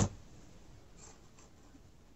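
A sharp tap at the very start, then faint rustling and scratching as rosemary sprigs are handled and tucked into an eggshell set in a cardboard egg carton.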